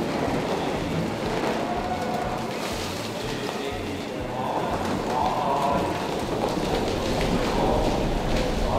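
A tunnel boring machine's cutterhead grinding through a concrete portal wall at breakthrough: a steady, noisy rush of cutting, falling debris and water.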